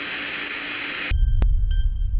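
Radio-transmission static hiss, the tail of the Apollo 11 'one small step' recording, cuts off abruptly about a second in. A deep electronic drone takes over, with a sharp click and then a ringing sonar-like ping, the start of the countdown intro music.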